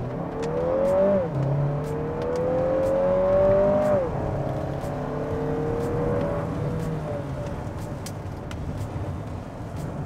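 Lexus NX350's 2.4-litre turbocharged four-cylinder engine at full throttle from a standstill, heard from inside the cabin. Revs climb and drop in pitch at about one and four seconds in as the automatic gearbox shifts up, then rise more slowly and fade.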